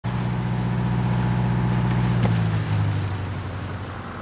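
A lobster boat's engine runs steadily at the helm. About two seconds in, the throttle lever clicks as it is pulled back, and the engine note drops and quietens.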